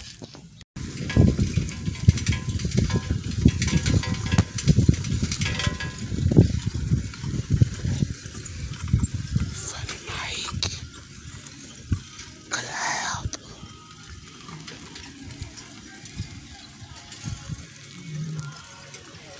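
Wind buffeting and handling rumble on a phone microphone carried on a moving bicycle's handlebars. It is uneven and heaviest in the first half, cuts out for a moment just after the start, and has one short higher-pitched call about two-thirds of the way through.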